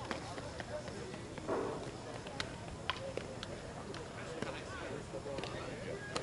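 Outdoor ambience of indistinct distant talk, with several sharp knocks and taps scattered at irregular intervals.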